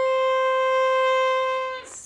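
A violin bowing one long, steady C, the C above middle C, as a note of a G major scale played in third position; it fades out near the end.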